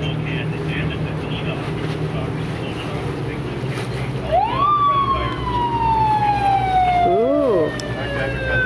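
Boat engine running steadily. About four seconds in, a loud siren-like tone rises quickly and then slides slowly down in pitch for several seconds, with a short rise-and-fall near the end.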